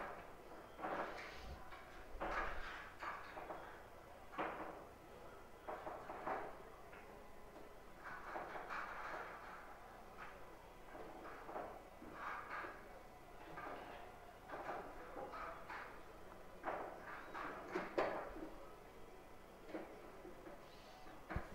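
Scattered knocks and clacks of pool balls at a low level, including the clatter of balls being gathered and racked in a triangle, with one sharper click near the end.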